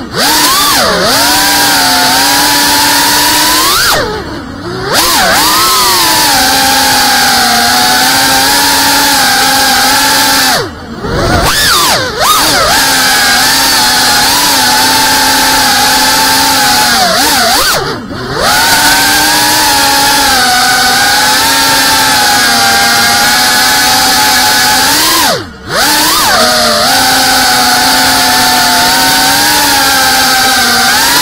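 GEPRC Cinelog 35 cinewhoop FPV quadcopter's brushless motors and 3.5-inch ducted propellers whining steadily in flight. Four times, roughly every seven seconds, the throttle is briefly cut and the whine drops in pitch and sweeps back up.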